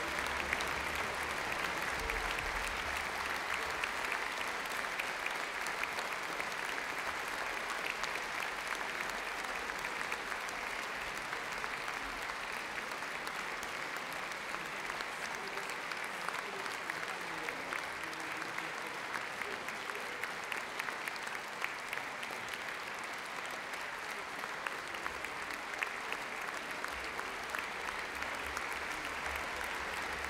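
Concert audience applauding steadily, a dense clapping that eases slightly in the middle and picks up again near the end.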